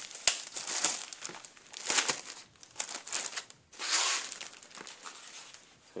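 Clear zip-lock plastic bag crinkling as hands pull it open to get at the gasket sheets inside, in irregular bursts that die down after about four seconds.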